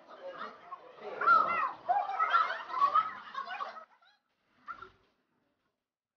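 People talking during a group exercise, their voices cutting off suddenly about four seconds in, followed by silence.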